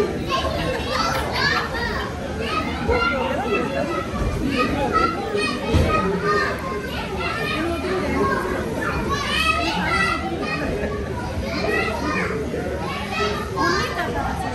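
Several young children playing and calling out in high voices, mixed with chatter, with a dull thump about six seconds in.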